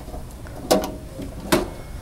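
Trailer water heater access door being unlatched and swung open: two sharp clacks a little under a second apart, the first with a short rattle after it.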